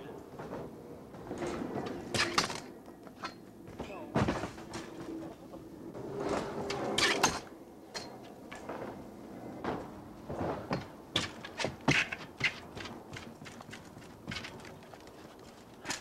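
BMX bike on a wooden ramp: tyres rolling on the boards, with a string of sharp knocks and clatters as the bike and rider hit the wood.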